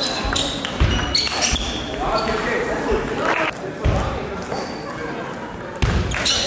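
Table tennis balls clicking off bats and tables, with a few heavier low thuds, echoing in a large sports hall over the chatter of people in the background.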